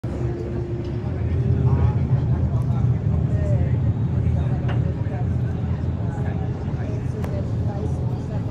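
Steady low rumble of a small boat under way on the harbour, its engine and wind on the microphone, with indistinct voices of people talking in the background.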